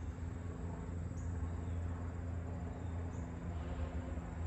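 Steady low hum with several constant tones, and a few short, faint, high chirps about a second in and again about three seconds in.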